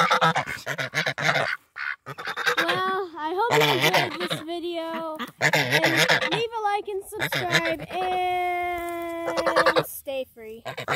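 Domestic white geese honking at close range in a run of harsh calls, with one call held for about two seconds near the end.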